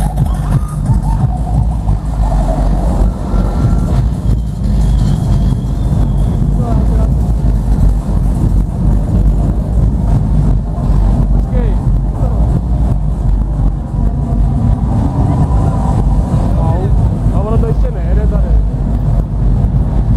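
Loud electronic dance music over a club sound system, heard mostly as steady deep bass with the upper sounds dulled, and crowd voices talking over it.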